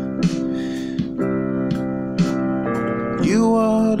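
Electronic keyboard holding sustained gospel chords from a 1-4-6-5 progression, moving from the 5 chord back to the 1, with a few fresh notes struck along the way. A voice comes in singing near the end.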